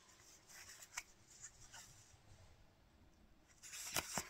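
Faint rustling and a few soft clicks as a paper tag and a skein of yarn are handled close to the microphone; otherwise near silence.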